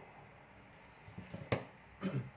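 Quiet room tone with a few soft handling sounds, then one sharp click about one and a half seconds in, as multimeter test probes are taken off a breadboard and put down.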